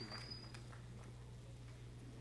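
The last scattered claps of audience applause die away about half a second in, leaving a quiet hall with a steady low hum. A brief faint high whistle sounds near the start.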